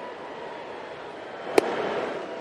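Steady crowd murmur in a baseball stadium, broken about a second and a half in by a single sharp pop as a 94 mph fastball smacks into the catcher's mitt on a swing and miss.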